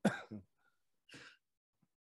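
A short throaty vocal sound at the start, then a quiet breathy sound about a second in, while a man sips beer from a can.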